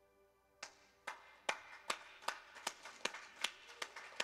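Hands clapping in a steady rhythm, about two and a half claps a second, starting about half a second in, over faint held music tones.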